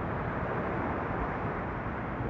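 Steady rushing outdoor background noise, even throughout with no distinct events.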